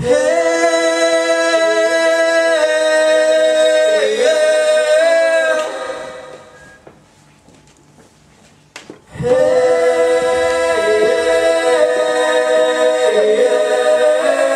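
Unaccompanied singing of long, held wordless notes in two phrases, with a pause of about three seconds between them and a click just before the second phrase.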